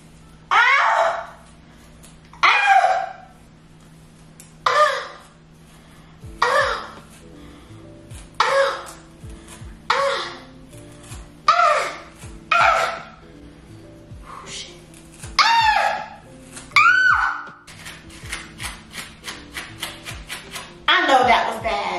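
A young woman's short cries of pain, about ten of them, each falling in pitch and coming every one to two seconds, as a comb is dragged through her tangled, dry hair. Background music with low held notes plays underneath.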